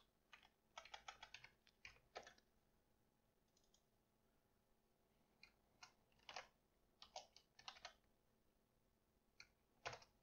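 Faint computer keyboard typing: short runs of keystrokes with pauses between them, as code is typed into an editor.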